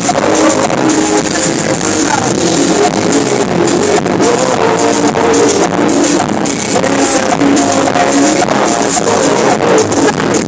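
Live Peruvian cumbia band playing loud and amplified, with sustained horn lines carrying the melody over a steady beat and no singing.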